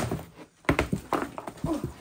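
A sharp knock of a plastic storage tub against a tabletop, then, about two-thirds of a second in, a quick run of knocks and wet slaps as thick homemade slime is tipped out of the tubs onto the table.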